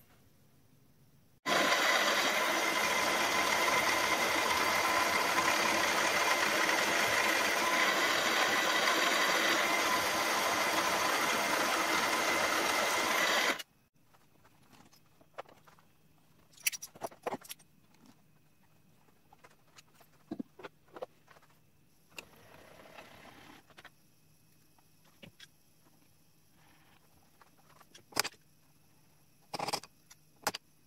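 A loud, steady rushing noise with a faint whine in it switches on abruptly about a second and a half in and cuts off abruptly some twelve seconds later. After it, light clicks and knocks of metal parts and tools being handled.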